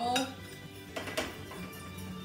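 A metal whisk clinks and scrapes against a stainless steel saucepan while stirring hot caramel sauce. There are sharper clinks right at the start and again about a second in.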